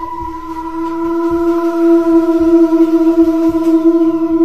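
A sustained, eerie electronic drone: one steady pitched note with overtones, held unchanged and swelling louder, with faint low knocks underneath.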